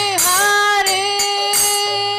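A woman singing a devotional chant, holding one long note steady after a short dip in pitch, accompanied by small hand cymbals struck in a steady beat about twice a second.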